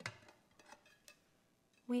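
A few light clicks of a clear glass plate being handled and turned over on a glass craft mat: one sharper click at the start, then two faint ticks.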